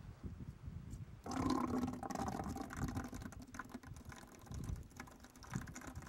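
Salmon eggs and fluid pouring and splashing into a plastic bucket as a female Chinook salmon is stripped by hand, starting about a second in, over low handling rumble.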